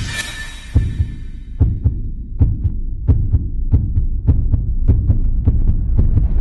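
Low, throbbing bass pulses with short sharp ticks about three a second, starting under a second in: a heartbeat-like soundtrack beat.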